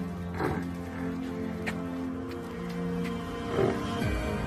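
Instrumental background music, with a Nili-Ravi water buffalo calling over it: a falling call about half a second in and a louder short one near the end.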